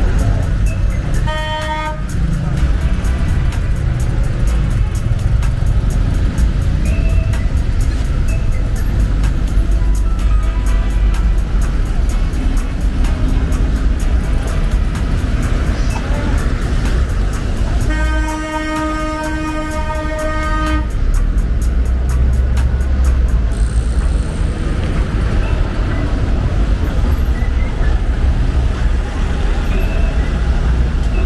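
Busy street traffic: a steady low rumble of engines and tyres, with a car horn giving a short toot about a second in and a longer honk of about three seconds past the middle.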